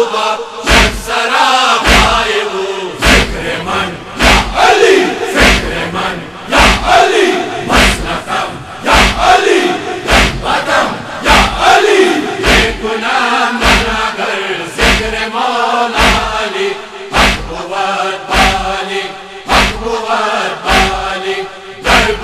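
A chorus of men chanting a Persian noha (mourning lament) in unison, kept in time by group chest-beating (matam): a heavy thump about once a second.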